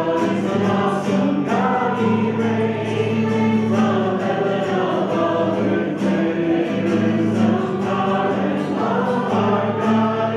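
A congregation singing a worship song together, led by a man strumming an acoustic guitar.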